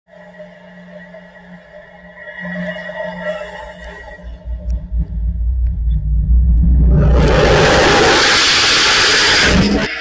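Music over a low rumble that builds, then from about seven seconds in a loud, even rushing roar of a hybrid rocket motor at liftoff, which cuts off just before the end.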